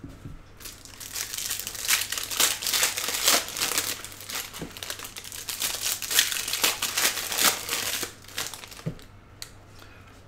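Foil wrapper of a baseball card pack crinkling and tearing as it is ripped open and handled. The crinkling dies down about eight seconds in, leaving a few light clicks.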